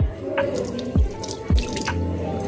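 Kitchen tap running into a stainless steel sink, water splashing as a pair of chopsticks is rinsed under the stream. Background music with a steady beat plays underneath.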